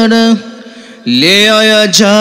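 A man singing long, drawn-out notes into a handheld microphone with no accompaniment. A held note breaks off about a third of a second in, and after a short gap a new note begins, sliding up into it.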